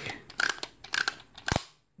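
A few light, sharp clicks and ticks, about five over a second and a half, stopping abruptly just before the end.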